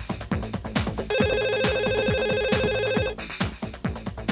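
An electronic telephone ringer trills for about two seconds, starting about a second in, over a fast techno beat with a steady kick drum.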